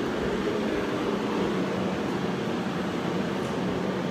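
Steady mechanical hum and hiss with a faint low tone, unchanging throughout.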